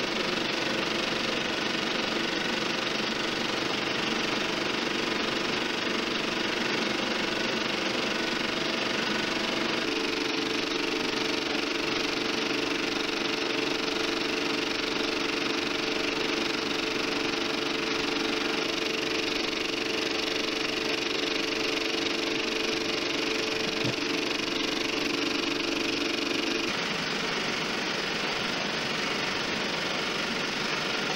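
A 70mm film projector running: a steady mechanical whir and clatter. A steady hum grows stronger about ten seconds in and drops back a few seconds before the end.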